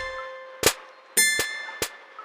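Instrumental rap beat between vocal lines: a ringing bell-like hit layered with a deep bass thump lands about a second in while the previous one is still dying away, with short sharp hits in between.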